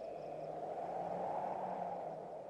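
Faint, steady low hum with a soft hiss of background ambience, swelling slightly in the middle.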